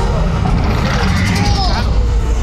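Loud, steady low rumble of a theme-park dark ride's soundscape, with voices over it and a couple of short sliding tones in the second half.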